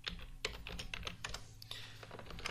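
Typing on a computer keyboard: a quick run of light key clicks, a short word being entered, thinning out near the end.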